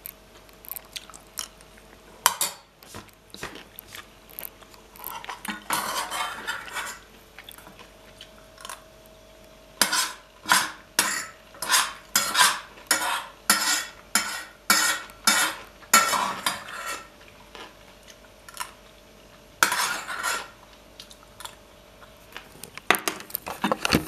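Metal cutlery clinking and scraping against an enamel bowl while eating salad, with a run of sharp clinks about two a second in the middle and longer scrapes before and near the end.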